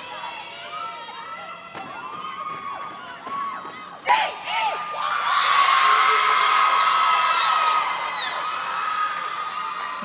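Audience cheering and screaming, many high voices whooping at once, rising sharply about four seconds in and staying louder for several seconds before easing.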